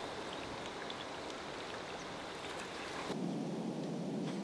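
A surface lure being reeled across a pond, its blade churning and spattering the water in a steady hiss. The sound thins out about three seconds in.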